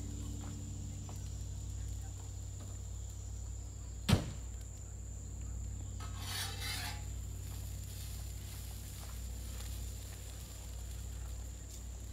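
Predator inverter generator running with a steady low hum. A single sharp click comes about four seconds in, and a brief rustle follows around six seconds.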